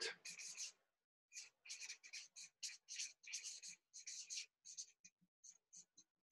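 A marker pen writing by hand on flipchart paper: a faint, quick run of short scratchy strokes as a word is written out.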